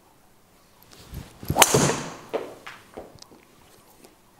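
A Cobra DarkSpeed MAX driver striking a golf ball off a tee: a faint swish of the swing, then one sharp, loud crack of impact about a second and a half in, followed by a few fainter knocks.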